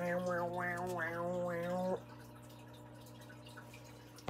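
A person's voice making a sustained vocal buzz imitating a vacuum cleaner, held steadily for about two seconds. It stops abruptly, leaving only a faint steady hum.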